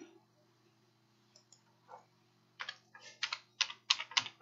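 Typing on a computer keyboard: a few faint clicks, then a quick run of key strikes in the last second and a half, over a faint steady hum.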